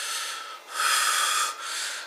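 A man taking slow, deep breaths, loud and rushing, in and out one after another: the "three deep breaths" he takes to calm his anxiety.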